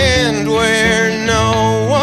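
A man singing live over his own strummed electric guitar: one long sung note, sliding down at the start and back up near the end, above steady chords.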